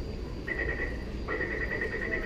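A high electronic chirping tone, a rapid trill held at one pitch, starting about half a second in, pausing briefly and starting again, over the steady hum of a metro station.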